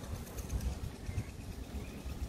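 Quiet outdoor ambience: uneven low wind rumble on the microphone, with a faint high chirp about a second in.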